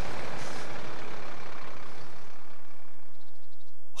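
A Volvo coach driving past close by, its engine and tyre noise loudest in the first second and fading away over about two seconds. A low steady hum remains near the end.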